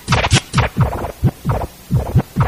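Instrumental drum beat with no vocals: deep kick-drum hits that drop in pitch, paired with sharp snare and hi-hat hits, repeating in a steady pattern of about three a second.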